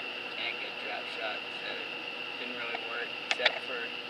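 Quiet, halting speech from the interviewee between sentences, over a steady high-pitched whine, with two sharp clicks about three and a half seconds in.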